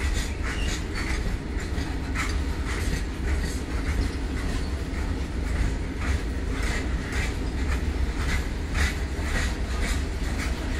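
Loaded BOXN open coal wagons of a freight train rolling past: a steady low rumble with repeated clacks as the wheels cross rail joints.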